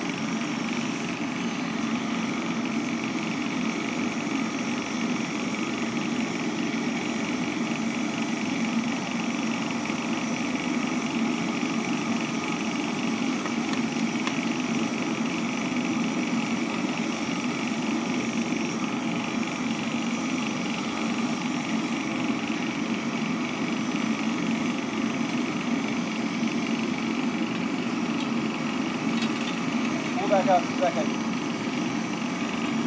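Backyard foundry furnace melting brass, running with its forced-air blower: a steady, unbroken drone of motor hum and rushing air.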